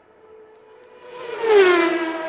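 Synthesized logo sting: a faint held tone swells a little past halfway into a loud rush whose pitch slides downward, then settles on a lower sustained tone.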